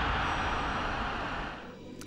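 Intro sound effect for a broadcast logo: a rushing noise over a low rumble that fades out near the end.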